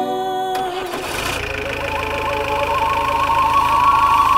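A vehicle's engine is started with the ignition key about half a second in and then idles steadily, with music playing over it.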